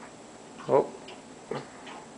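A person's short exclamation of "oh" under a second in, then a second brief vocal sound, with faint light ticks in between.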